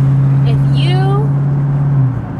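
The Dodge Charger Scat Pack's 392 HEMI V8 heard from inside the cabin, running in sport mode with a steady low drone held at one pitch.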